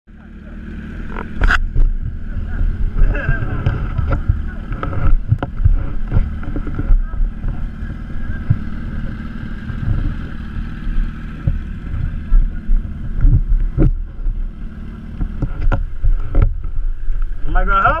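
Motorcycle engine running under a loud, uneven low rumble of wind and handling noise on a helmet-mounted camera microphone, with a few sharp knocks.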